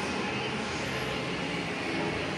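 Steady, even background noise of a large indoor shopping mall hall: a constant room hum with no distinct events.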